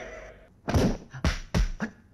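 Dubbed kung fu film fight sound effects: a quick series of four punch and kick impacts, each a sharp thud, in just over a second.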